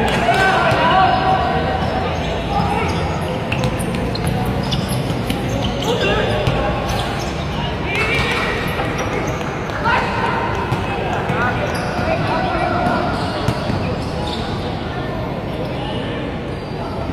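Players and onlookers calling out and talking during a basketball game, with the ball bouncing on the court now and then.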